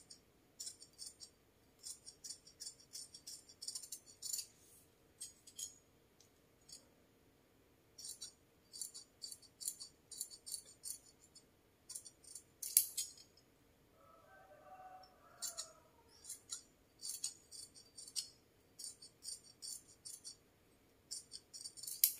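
Large steel tailor's scissors snipping through folded mesh tulle, cutting it into strips: runs of short, crisp clicks of the closing blades, with short pauses between runs.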